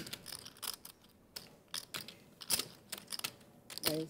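Clay poker chips clicking as they are handled at the table: short, sharp clicks at irregular intervals, bunched together in the last second and a half.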